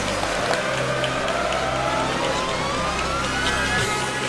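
A single tone rising slowly and steadily in pitch for about three seconds, over a steady low hum.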